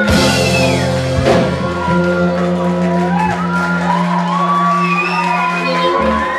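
A live rock-blues band ending a song: two crashing drum and cymbal hits near the start, then the last chord held and ringing out while audience members whoop and shout.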